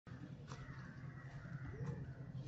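Faint outdoor bird calls over a low steady hum.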